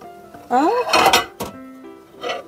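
A ceramic plate scraping and clinking on a microwave's glass turntable as it is slid out, about a second in, followed by a single sharp click.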